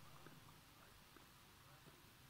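Near silence: faint background hiss with a few very faint clicks.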